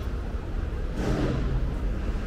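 City street traffic noise: a steady low rumble of vehicles on the road beside the tram tracks, with a brief pitched sound about a second in.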